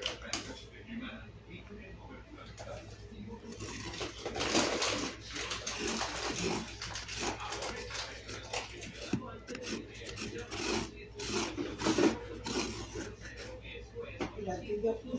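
A tool scraping and carving the flesh of a pumpkin in a run of uneven scraping strokes, which grow louder about four seconds in.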